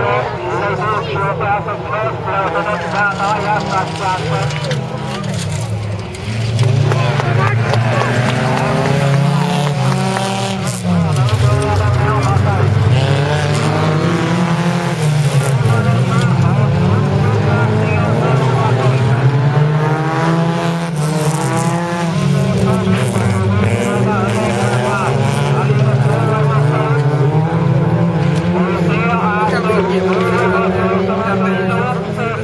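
Engines of several folkrace cars racing on a dirt track, their revs rising and falling over and over as the cars accelerate and slow for corners; the sound gets louder about six and a half seconds in.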